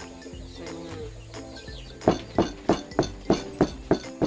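Pestle pounding in a mortar: sharp, even knocks about three a second, starting about halfway in, over background music.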